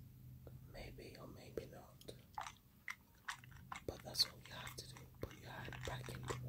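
Hands working artificial nails loose in warm soapy water with a cuticle tool: a quick, irregular run of small wet clicks and squelches, over a faint steady low hum.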